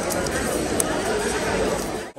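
Many diners talking at once in a busy restaurant dining room: a steady babble of overlapping voices with no single voice standing out.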